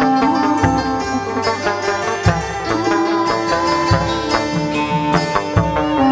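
Instrumental chầu văn ritual music: a plucked moon lute (đàn nguyệt) playing a melody over repeated drum strokes, with no singing.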